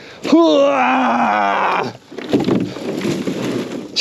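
A man's long drawn-out vocal groan, about a second and a half, falling slowly in pitch, followed by breathy laughter.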